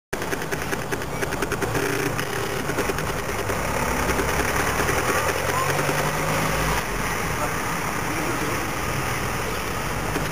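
People's voices talking over the steady hum of a running engine.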